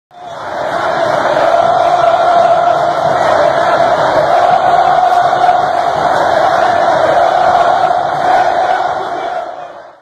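A large football crowd chanting together, loud and steady, fading in at the start and fading out near the end.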